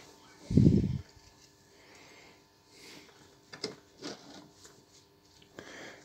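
A rag and a small plastic dish being handled: a muffled low thump about half a second in, then a few faint clicks and rustles.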